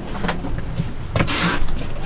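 Scuffing and handling noise as someone steps into a cramped brick-and-concrete pillbox, with a few small clicks and a short scrape about one and a half seconds in, over a steady low rumble.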